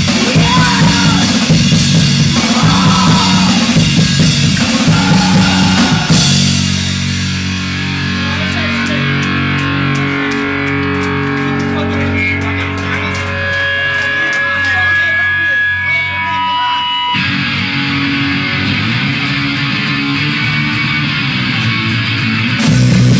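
Live punk band with distorted electric guitars, bass and drum kit, playing loud. About six seconds in the full band drops away, leaving electric guitar notes ringing with lighter, sparser playing underneath.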